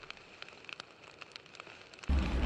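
Faint, scattered crackles and ticks from a fire sound effect, the tail of a flaming title animation's audio.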